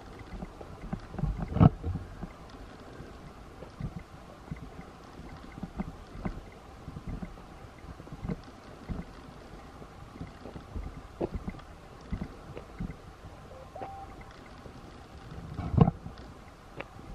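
Footsteps on a dirt forest trail, with irregular low thumps roughly once a second over a steady hiss. A louder knock comes about a second and a half in and again at the very end. One short, brief note is heard near the end.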